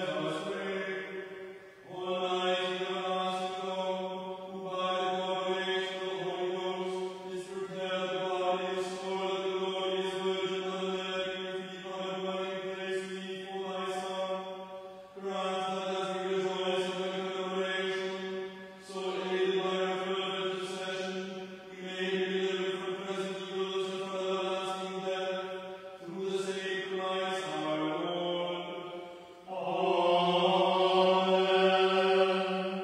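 A voice chanting liturgical text on a single sustained reciting tone, in phrases of a few seconds separated by short pauses for breath, with a drop in pitch near the end.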